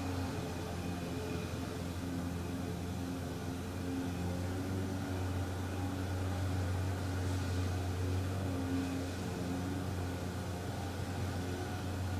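A steady low hum, with fainter pitched tones that swell and fade every few seconds.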